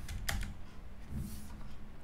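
Computer keyboard typing: a few quick keystrokes in about the first half second, then only the odd faint click.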